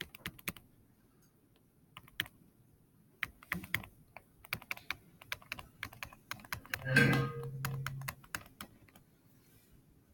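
Stylus pen tapping and clicking on a tablet screen during handwriting: a string of light, irregular clicks. About seven seconds in, a man hums a short low 'mmm'.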